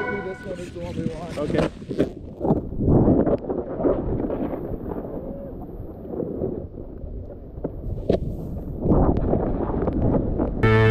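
Snowboard riding through deep powder snow: a fluctuating rushing hiss of the board and sprayed snow, with wind buffeting the action-camera microphone and a few sharp knocks.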